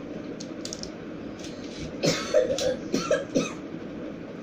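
A person coughing and clearing their throat several times about halfway through, over a steady background hiss.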